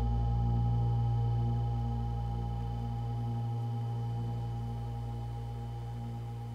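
A held electronic synth chord from a Serum patch played through an amp simulator, ringing as a steady drone of several tones and slowly fading out.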